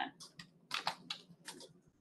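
A quick run of about ten soft clicks and taps, ending after about a second and a half.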